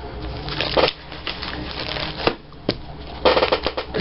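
Plastic sheet protectors and magazine paper crinkling and rustling as binder pages are handled and turned, with a few sharp crackles and a denser burst of crinkling near the end.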